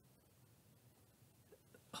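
Near silence: room tone, with a short, sharp intake of breath near the end.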